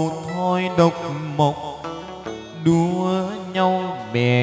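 Chầu văn ritual music: a voice holds long notes that slide up and down over the band's accompaniment, with a few sharp percussion strikes.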